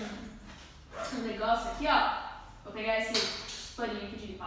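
A woman's voice in a few short spoken phrases, separated by brief pauses.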